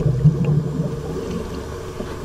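Underwater noise: a low rumble with a faint steady hum, easing slightly in level.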